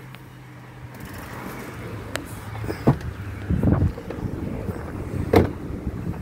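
Someone climbing out of a 2009 Saturn VUE: a couple of clicks, a rumbling shuffle around the middle, and the door shutting with a sharp knock near the end.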